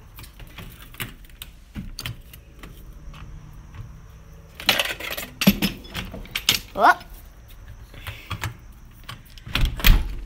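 Handling noise of a phone held in the hand: scattered light clicks and rustling, growing into a dense run of loud clicks and rubbing about halfway through, with a brief rising squeak. A loud low thump comes near the end.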